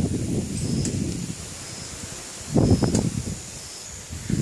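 Handling noise as a phone camera is moved and turned around, with rustling: a low, uneven rumble and a louder scuff about two and a half seconds in.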